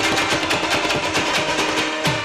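Instrumental passage of Pashto folk music: a rabab played in fast, even strummed strokes with tabla accompaniment, without singing.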